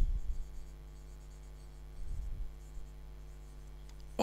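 Marker pen writing on a whiteboard: faint rubbing strokes, briefly louder about halfway through, over a steady low hum.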